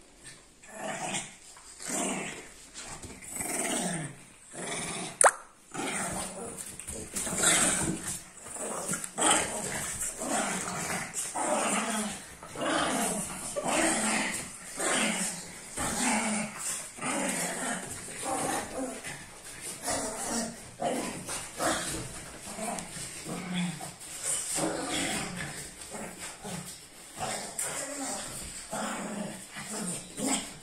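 A Shih Tzu and a French bulldog growling and giving short barks at each other in quick bursts as they tussle. A single sharp click comes about five seconds in.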